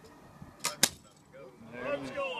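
Loaded rope rigging breaking under a winch pull: two sharp snaps about a fifth of a second apart, the second louder, as the back of the two loaded cords gives way.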